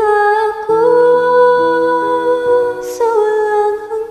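A woman singing a slow cover over an instrumental backing track, holding long notes. The accompaniment is steady sustained chords that change every second or so. A sung 's' hisses briefly about three seconds in.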